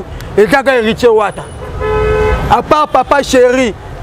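A vehicle horn honks once, a steady note lasting under a second about two seconds in, over the low rumble of passing traffic.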